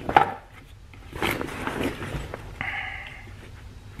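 Handling noise as a cordless impact wrench is lifted out of a fabric tool bag: a sharp knock, then rustling of the bag's cloth, and a short buzz near the end.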